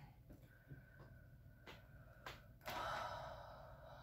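Quiet handling of fine jewellery wire and small hand tools: a few light clicks, then a short soft rush near the end that fades over about a second and is the loudest sound.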